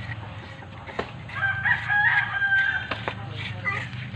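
A rooster crows once, a held call of about a second and a half starting just over a second in. Under it come light clicks and scrapes of a metal spoon scooping the flesh out of a young coconut.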